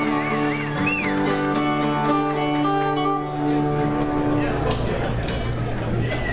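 Live acoustic and electric guitars playing the opening of a rock song in sustained, ringing notes and chords, with a few whistles from the crowd in the first second.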